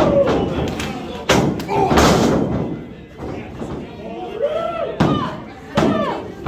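Wrestlers' bodies slamming onto a wrestling ring's canvas-covered boards: a few loud thuds, about a second in, around two seconds and near the end, among shouted voices.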